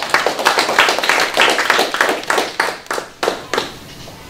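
A small group applauding, many overlapping hand claps that thin out and die away about three and a half seconds in.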